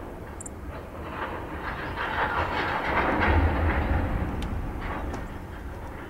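Covered hopper cars of a freight train rolling past, with steady wheel-on-rail noise and scattered clicks and clatter from the wheels. The noise swells to its loudest about halfway through, then eases.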